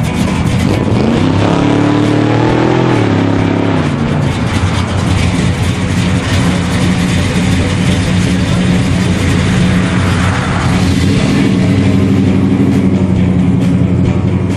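Chevrolet Chevelle SS's V8 engine revving up and dropping back over the first few seconds as the car pulls away slowly, then running steadily at low speed.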